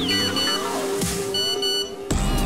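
Background music, with an electronic double beep heard twice over it: a phone alert for an incoming message.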